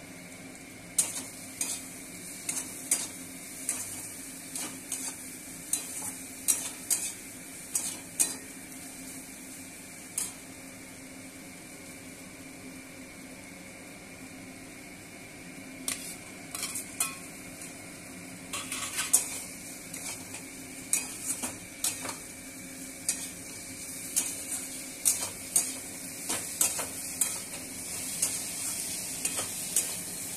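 Potato cubes frying in oil and spice paste in a steel kadai, a steady sizzle, with a steel spatula scraping and clinking against the pan in irregular strokes. About halfway through, fried pieces are tipped in from another pan with a clatter, and the stirring grows busier.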